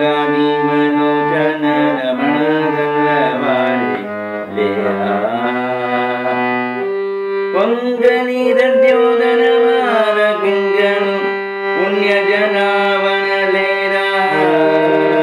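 A man singing a Carnatic devotional bhajan, his voice sliding and ornamenting between notes, over the sustained reed tones of a harmonium whose held notes shift to new pitches every few seconds.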